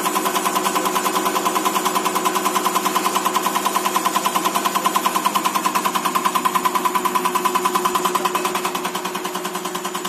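Electronic unit injector being driven on an EUS2000L diesel injector test bench, firing in rapid, even clicks at about ten a second over the steady whine of the bench drive. The clicking drops a little in level about eight and a half seconds in.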